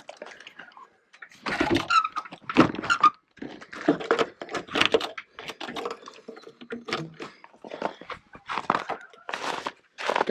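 A travel trailer's metal entry door and latch being handled: a string of irregular knocks, clunks and rattles, with rustling between them.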